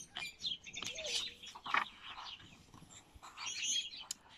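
Small songbirds chirping in the background, many short high calls scattered throughout.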